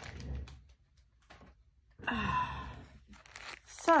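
Plastic packets of craft supplies crinkling and ticking faintly as they are handled on a tabletop. There is a quiet gap about a second in, and a brief vocal sound about two seconds in.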